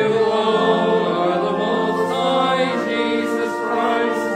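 Church singing: several voices, the pastor's among them, sing slow, held, chant-like notes together.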